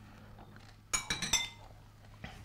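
Cutlery clinking against a plate while eating: a quick cluster of several light, ringing clinks about a second in.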